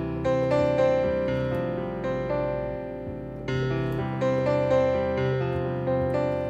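Pro Tools' Mini Grand virtual piano played live from an M-Audio Oxygen Pro MIDI keyboard: a slow sequence of chords and single notes that fades down, then a new phrase begins about three and a half seconds in.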